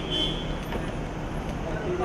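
Steady traffic and car noise with indistinct voices in the background, and a brief high tone right at the start.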